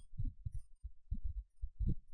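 Soft, muffled low thuds coming irregularly, several a second.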